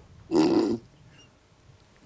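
A person's short laugh about half a second in, lasting about half a second.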